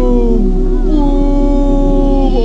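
Drawn-out "ooooh" exclamations of awe from onlookers, sliding slowly down in pitch in two long calls, over background music with a steady low hum.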